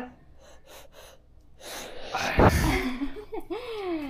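A toddler's breathy gasp close to the microphone, building and peaking a little past halfway, followed by short gliding vocal sounds.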